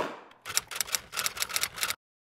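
Typewriter keystroke sound effect: a quick, irregular run of sharp clacks lasting about a second and a half, starting about half a second in. A single sharp hit at the very start comes before it.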